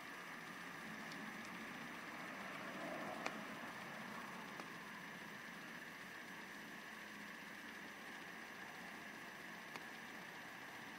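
Faint, steady background hiss of room noise, with one small click about three seconds in.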